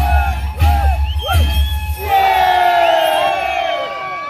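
Andean carnival music from Ayacucho with a fast, steady drum beat and high voice calls; about two seconds in the drum stops and the dancers give a long group shout, several voices sliding slowly down in pitch.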